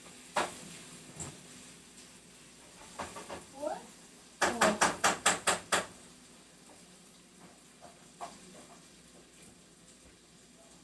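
A quick run of about eight sharp clinks, a kitchen utensil knocking against a pot or bowl, over a low steady hiss of food frying.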